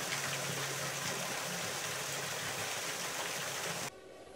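Water jetting from a hose and splashing onto steel floor grating: a steady rushing hiss with a low hum underneath. It cuts off abruptly near the end.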